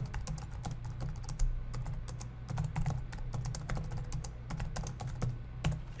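Computer keyboard typing a sentence: a quick, uneven run of keystroke clicks, over a steady low hum.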